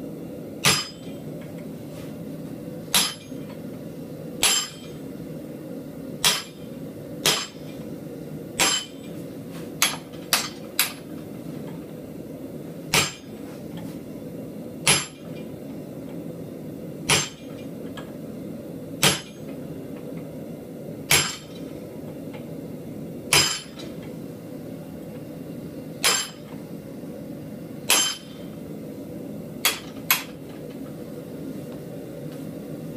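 Hand hammer striking a blacksmith's cutter held against red-hot steel in a vise, cutting a line into the hot metal: sharp metallic blows every second or two, with a quick run of three or four blows about ten seconds in. A steady low hum runs underneath.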